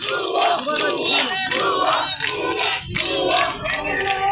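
Crowd of student protesters shouting slogans, many voices overlapping.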